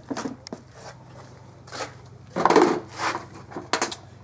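Handling noise of a removed engine part: scattered clicks and knocks, with a louder rubbing scrape about two and a half seconds in, over a steady low hum.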